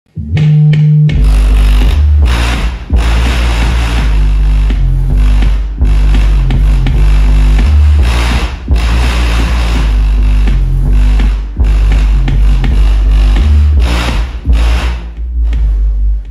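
Bass-heavy music played loud through a stacked PA sound system of subwoofers and top cabinets, with heavy deep bass and short breaks in the beat every few seconds.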